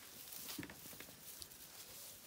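Faint rustling and a few light ticks of Zwartbles lambs moving about on straw bedding.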